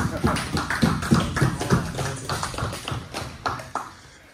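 Several men's voices talking and calling out over each other, too jumbled to make out, with scattered short taps. The sound gets quieter toward the end.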